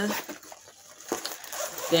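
Faint rustling and a couple of light taps as a backpack is handled close to the microphone.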